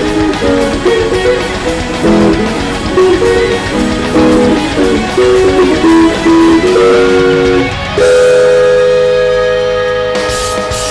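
Korean Barclay electric guitar playing a single-note lead line. Near seven seconds the pitch slides down, and about a second later one loud note is struck and left to ring, slowly fading.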